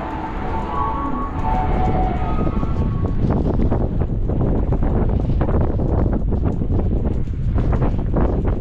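Wind buffeting the camera's microphone in gusts, making a heavy, irregular rumble. A few faint steady tones fade out during the first three seconds.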